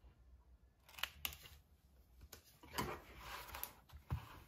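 Faint handling noises: a few sharp clicks about a second in, then scratchy rustling and scraping with more clicks in the second half.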